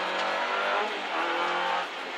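Renault Clio N3 rally car engine heard from inside the cabin, pulling hard under load. Its level dips briefly about a second in, then falls off near the end as the throttle lifts.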